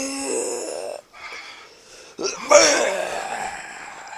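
A man's drawn-out, pitched cry of pain, cutting off about a second in. A sharp crack a little after two seconds sets off a second, louder cry that fades away near the end, the sound of a staged blow landing and the opponent reacting to it.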